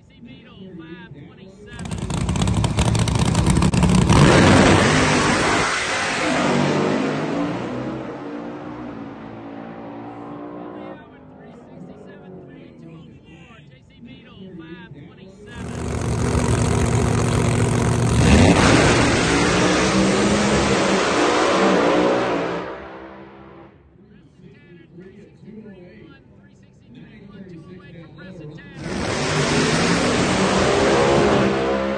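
Pro Mod drag cars launching and running at full throttle down the drag strip, twice: each pass starts suddenly, is loudest in its first few seconds and fades over six to eight seconds as the cars pull away. A third launch begins near the end.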